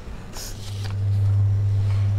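A steady low hum, with a brief rustle about half a second in as a paper sheet with cards stuck on it is moved about in the hands.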